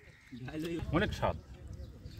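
Short voiced sounds whose pitch rises and falls, starting about a third of a second in.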